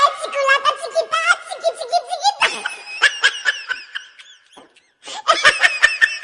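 High-pitched laughter in repeated fits, trailing off past the fourth second, then breaking out again in a fresh burst about a second later.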